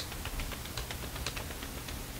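A sharp click, then a run of light, irregular ticks and taps from hands handling a small perfume sample and a paper test strip.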